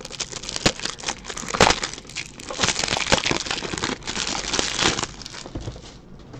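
Crinkling and crackling of thin plastic cellophane wrap as it is handled and pulled off a box of card toploaders, in irregular bursts that die down near the end.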